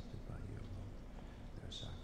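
A man's voice murmuring a prayer quietly, heard faintly, with soft hissing 's' sounds, the clearest near the end.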